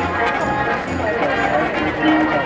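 High school marching band playing live in a stadium: wind instruments holding notes over a low drum beat about once a second.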